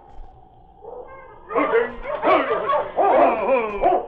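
Sled dogs barking, quieter for the first second and a half, then loud and continuous to the end: a radio-drama sound effect of a dog team arriving.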